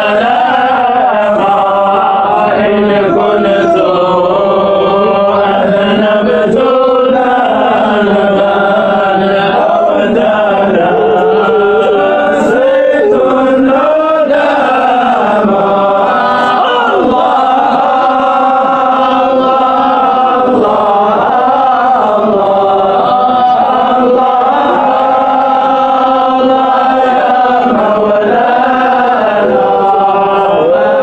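Male voice chanting a Sufi samaa devotional hymn in Arabic: a continuous melodic chant of long, wavering held notes that slide between pitches, with no drum beat.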